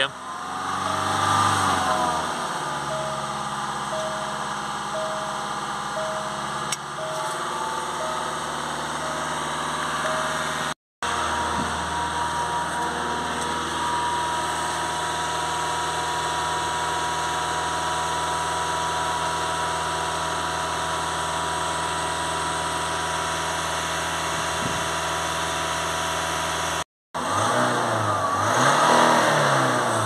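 Range Rover Evoque diesel engine held at a steady raised speed of about 2500 rpm by a pedal depressor, flushing DPF cleaning fluid out through the exhaust. The revs rise about a second in, then hold level.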